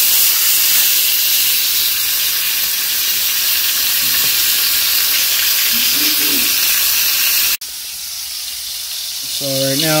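T-bone steak sizzling steadily in hot olive oil in a cast iron skillet over high heat, its freshly flipped side searing. The sizzle cuts off suddenly about three-quarters of the way through, leaving a quieter hiss.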